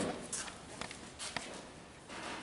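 Quiet room tone with three faint, short clicks spaced about half a second apart, after the last of a spoken word at the very start.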